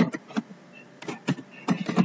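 Computer keyboard being typed on, a few irregular keystroke clicks with short gaps between them.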